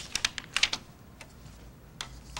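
Sheets of paper being handled and shuffled on a tabletop: a quick run of short, crisp rustles in the first second, then one fainter rustle and quiet handling.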